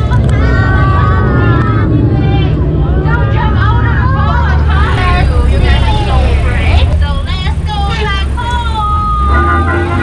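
A tour boat's motor runs with a steady low rumble under a loud, animated voice, most likely the boat's skipper narrating, with passengers' voices around it.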